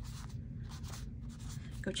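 An ink pad rubbed in a series of short, irregular scratchy strokes across the edges of a paper cut-out, foam dragging on card stock as the edges are inked.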